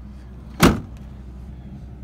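A single sharp knock a little over half a second in, over a steady low hum.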